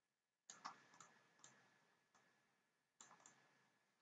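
Faint computer mouse clicks in near silence: a few quick clicks from about half a second to a second and a half in, and another small group around three seconds.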